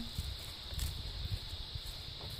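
Irregular low rumble and soft knocks of someone walking over grass with a handheld camera, over a steady high-pitched hiss.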